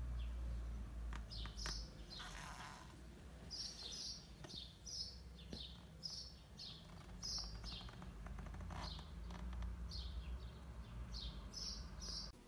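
Small birds chirping: many short, high chirps repeated throughout, over a low rumble.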